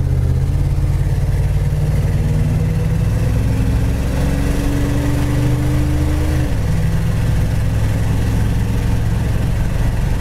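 1968 Pontiac GTO's 400 four-barrel V8, heard from inside the cabin while driving, pulling steadily in gear over road noise. Its note slowly rises, then changes abruptly about six and a half seconds in as the automatic transmission shifts gear.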